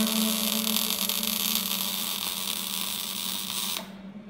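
Sparking sound effect of an intro animation: a steady sizzling hiss that fades slowly and cuts off suddenly just before the end, over a low steady hum.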